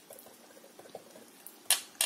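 A dry, stiff-bristled paintbrush dabbing paint onto a metal can lid with a faint irregular scratchy crackle. A brief louder rasp comes near the end.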